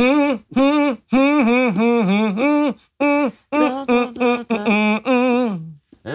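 A man mumble-sings a pop song's melody without words: a string of short sung notes, each sliding up and then down in pitch, with brief breaks between phrases and a falling note at the end.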